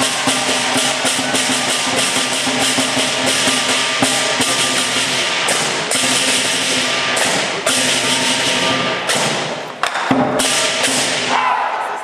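Southern lion dance percussion of drum, cymbals and gong, playing a fast, steady beat of crashing strikes over a ringing tone. It breaks off briefly near ten seconds in, then resumes and fades near the end.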